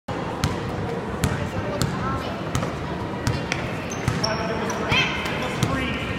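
Basketball being dribbled on a gym floor: sharp, irregular bounces about once a second, over the chatter of spectators.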